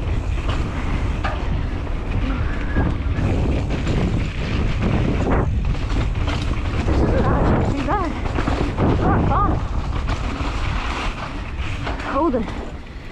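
Mountain bike riding fast down a dirt singletrack: wind buffeting the microphone over a steady low rumble from the tyres on the dirt, with a few sharp knocks as the bike goes over bumps.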